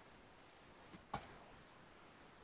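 Near silence: faint room hiss, with one short click about a second in.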